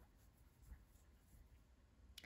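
Near silence, with faint scratching of yarn drawn over a metal crochet hook as double crochet stitches are worked.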